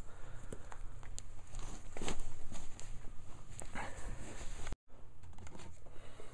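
Footsteps on carpet and handling noise, with scattered light clicks and rustles and a louder stretch about two seconds in. The sound drops out completely for a moment near the end.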